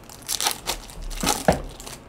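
Trading-card pack wrappers crinkling as gloved hands handle them, in several short bursts of rustling, with a sharp click near the end.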